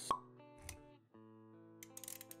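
Intro stinger of an animated logo: a sharp pop just after the start over soft backing music, a brief low swoosh a little later, then held music notes starting about halfway through.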